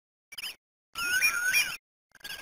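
High-pitched squeaky chirps: a short one about a third of a second in, then a longer warbling run about a second in.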